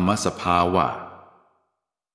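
A man's voice narrating in Thai, the last word of a phrase trailing off into reverberation, then dead silence for the last half second.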